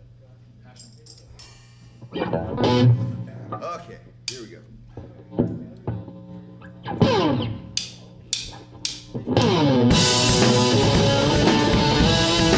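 Electric guitar, bass guitar and drum kit of a rock trio: after a couple of seconds of low amplifier hum, loose guitar and bass notes and chords with drum hits, a few notes sliding down in pitch. About nine and a half seconds in, the full band comes in together, loud and steady with cymbals.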